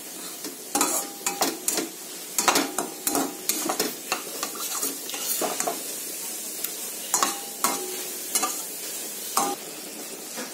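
A spatula stirring and scraping thick, sticky pumpkin chutney around a stainless-steel kadai, in irregular strokes that thin out in the second half, over a steady sizzle from the cooking mixture.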